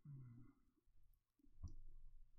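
Near silence: faint room tone, with a soft click about one and a half seconds in.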